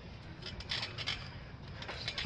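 Quiet outdoor background noise with a few faint soft thuds of feet shifting on a backyard trampoline mat.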